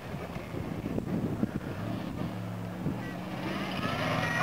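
Engine of a modified 4x4 rock crawler running under load as it crawls the course, a steady low hum that grows louder toward the end as it comes closer.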